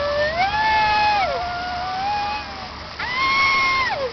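A high-pitched voice holding long, gliding 'ooh'-like notes, one after another, each about a second long.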